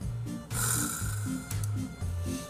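Soft instrumental background music with a slow low melody, and about half a second in a loud breathy rush of air lasting about a second, a person's forceful exhale or snort through the nose.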